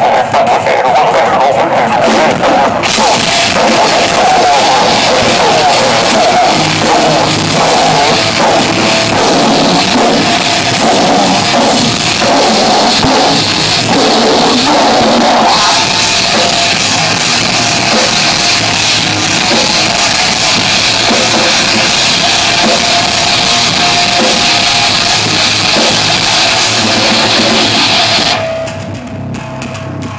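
A live rock band playing loud, with electric guitars and a drum kit, heard from the audience; the sound gets brighter about halfway through, and the song stops about two seconds before the end.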